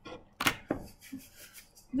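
Two sharp knocks in quick succession, then a soft rustle, as a large dog brushes against the camera.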